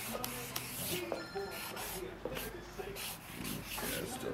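Broad-tipped ink marker rubbing and scratching across paper in a run of short, quick strokes as handstyle letters are drawn.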